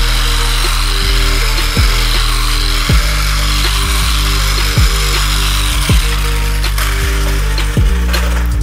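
Background music with a deep bass line, over an electric polisher spinning a cycle buff against the trailer's aluminum skin; the polisher's whir stops about seven seconds in.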